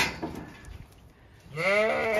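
A Zwartbles ewe bleating once, starting about a second and a half in, after a short noisy burst at the very start.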